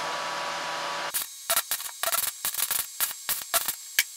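A steady whir for about a second, then the rapid, irregular crackling of a carbon arc as a graphite rod from a salt battery, on a welder set to 60 amps, strikes a bronze ring. The bronze burns and spits off particles rather than melting.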